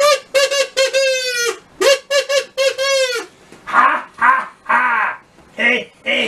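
A quick run of short, buzzy, high squawks for about three seconds, then a string of low, gruff vocal grunts as a puppet character enters.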